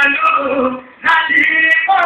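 A man singing held, sustained notes, breaking off briefly just before a second in and then starting the next phrase.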